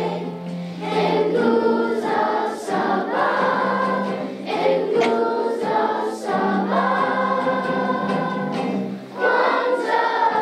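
Children's choir singing together in sung phrases with short breaks between them, over a steady low note held beneath much of it.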